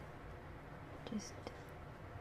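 Coloured pencil making faint short strokes on paper, with a few light ticks, under one softly whispered word about a second in.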